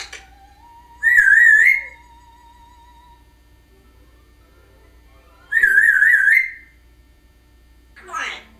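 African grey parrot whistling twice: two wavering, trilled whistles of about a second each, several seconds apart.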